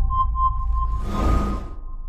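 News intro music: a deep bass drone under a run of quick high beeps, about five a second, with a whoosh swelling about a second in.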